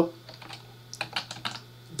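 Computer keyboard typing: a short run of quick keystrokes about a second in, typing a short command at a terminal prompt.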